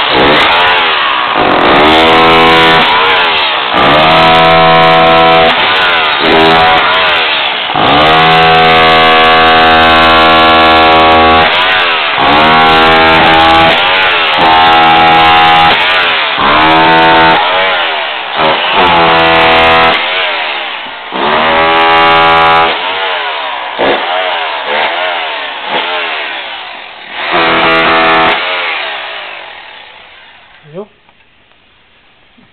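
Handheld electric rotary hammer chiselling through a tiled floor, run in repeated bursts of a few seconds, the motor winding up at each trigger pull, to open a way to a leaking water pipe. The bursts grow shorter and fainter near the end.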